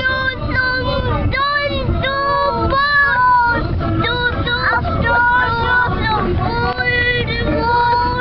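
A young boy singing loudly inside a moving car, a continuous string of short notes that rise and fall, over the low rumble of the car on the road.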